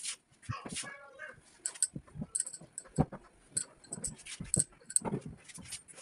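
A heavy cloth being swung and shaken out, giving a run of irregular sharp flaps and thumps, with a short whine just under a second in.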